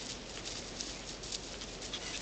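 Faint scuffling of a Doberman and a Yorkshire terrier puppy playing on grass: soft patter of paws with a few light taps.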